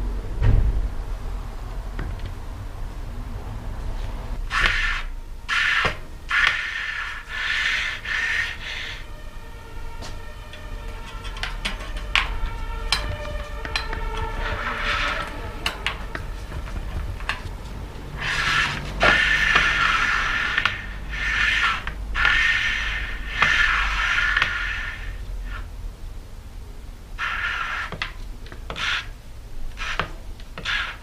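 Bicycle wheel turning in the frame with a rubbing squeal about once a second, in two runs with a steadier squeal between them. The rhythm fits an accident-bent rim catching on each turn.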